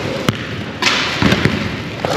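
A basketball thumps once on a gym floor about a quarter second in, followed by rustling of clothing against the camera microphone.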